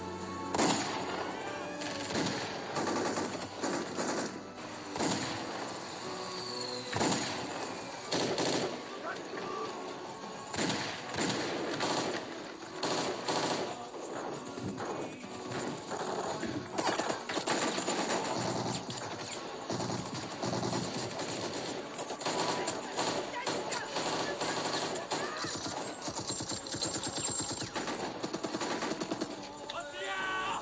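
Repeated bursts of automatic gunfire, many rapid shots, with a dramatic film score running underneath.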